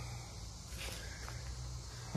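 Quiet outdoor background with faint footsteps in dry leaf litter.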